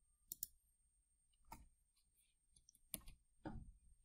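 Faint computer mouse clicks: about half a dozen single, spaced-out clicks as points are picked on screen.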